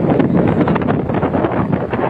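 Wind buffeting a phone's microphone in a loud, steady rush, over surf washing in among beach rocks.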